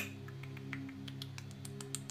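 Quiet background music: a steady drone of low held tones, with a few faint light clicks over it.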